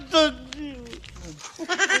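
A man's drawn-out, quavering voice sliding down in pitch, a bleat-like comic whine. About a second and a half in it cuts off and gives way to laughter: 'ha ha ha'.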